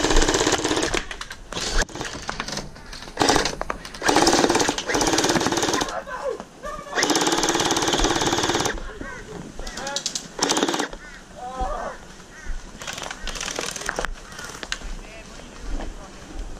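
M249 V3 gel blaster firing on full auto: several bursts of a fast, rattling electric gearbox, the longest about two seconds, with short ones between.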